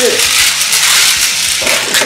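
Two plastic-and-metal toy battle tops launched into a plastic stadium dish, whirring and scraping as they spin across the plastic floor. A loud, steady, hissing whir.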